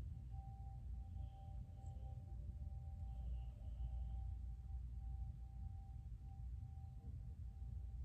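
A faint, steady, single-pitched tone held throughout over a low room rumble.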